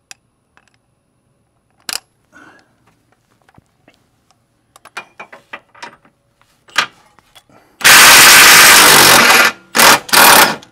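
Cordless impact wrench hammering on a 24 mm subframe bolt in one loud run of about a second and a half near the end, then a short second burst. Before that, only a few light metallic clicks and taps as the tool is set on the bolt.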